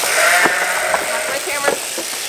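A sheep bleating once, a call of about a second near the start, with a couple of sharp knocks.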